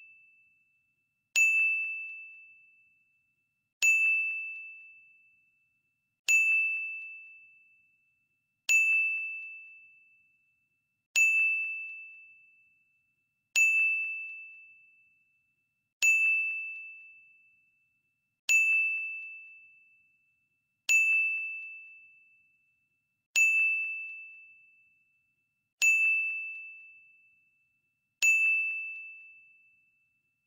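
A quiz countdown-timer ding sound effect: a single high bell-like ring that fades out over about two seconds, repeating evenly about every two and a half seconds, some twelve times.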